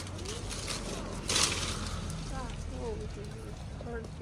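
A short rustle of citrus leaves and branches, about a second in, as a lime is pulled off the tree by hand.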